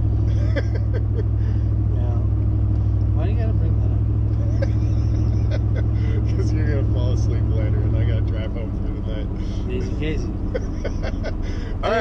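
Car cabin drone while driving: a deep, steady rumble of engine and road noise that drops away fairly suddenly about eight seconds in.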